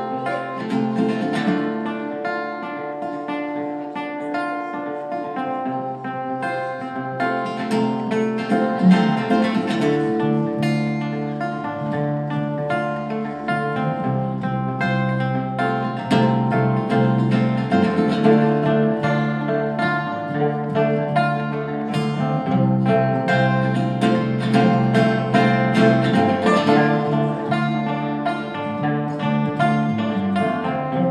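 A small band playing live without singing: acoustic guitar strumming, electric bass holding a low line underneath, and banjo picking fast notes on top.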